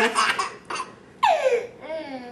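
Toddler laughing in short bursts, with a long falling squeal a little past the middle.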